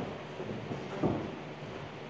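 Faint room noise with one dull thump about a second in, from two people stick sparring on a padded boxing-ring floor.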